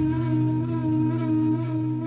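Slow, relaxing flute music: one long held note with a slight waver, over a steady low drone.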